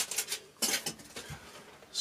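Handling noise from an electric guitar being moved and turned in the hands: a few short rustles and scrapes in the first second, with no notes played.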